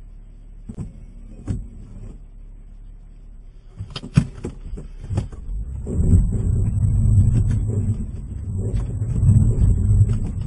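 A few soft knocks, then a car door being opened and slammed, with sharp thumps about four to five seconds in. From about six seconds the car's engine runs loud and uneven, revving under load as the car works to pull out of deep snow.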